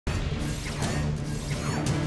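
Dark dramatic music score with a low steady drone, laced with crackling and a few sharp hits.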